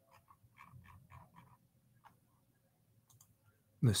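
Faint taps and clicks of a computer keyboard and mouse, about half a dozen in quick succession in the first second and a half, then a single click about two seconds in.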